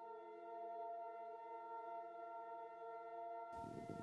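Faint ambient meditation music: a sustained chord of steady, held tones with no beat. A soft hiss joins near the end.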